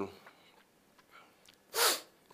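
Near silence, then one short, sharp breath from the man close to his microphone near the end, just before he speaks again.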